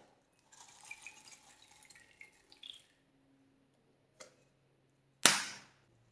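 Small beads pouring and rattling out of a clear cup onto slime for about two seconds, then a faint click and, about five seconds in, a loud sharp knock.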